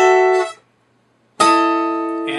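Acoustic guitar strummed twice: a chord cut short after about half a second, then, after a short gap, a different chord that rings on. It demonstrates the chord where the fretting pinky slips off the 12th fret and falls onto the 11th.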